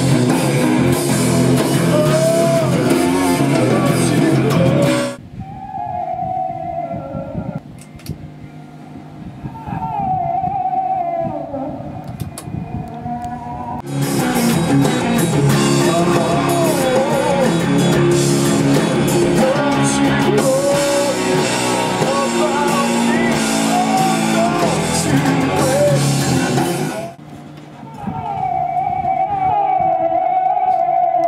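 Heavy rock music with guitars. The full band thins out about five seconds in to a sparser passage with a high gliding lead line, comes back in full about fourteen seconds in, and drops away again near the end.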